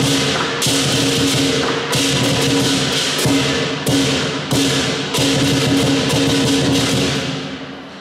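Lion dance percussion: a large lion dance drum, a gong and hand cymbals playing a steady beat. The cymbals crash roughly every half second to a second over the ringing gong, and the playing dies away near the end.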